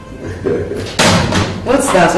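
A single sharp slam about a second in, among voices.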